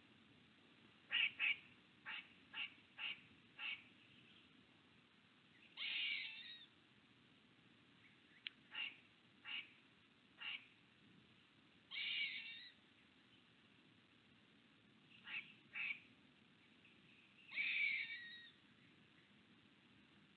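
Songbird calls over faint outdoor background: a scattering of short, sharp chips, the loudest just after the first second, broken by three longer, harsher calls about six seconds apart.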